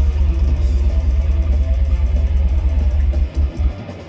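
Live technical death metal: distorted electric guitar over a drum kit with a dense, heavy bass-drum low end, and no bass guitar. Near the end the band drops out briefly before crashing back in.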